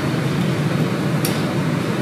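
Steady room noise, a low hum and hiss, with one brief faint click a little past a second in.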